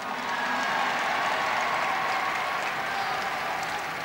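Large outdoor crowd applauding steadily.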